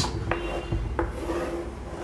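Chalk scraping on a chalkboard as lines are drawn, in short strokes with a couple of light taps where the chalk meets the board.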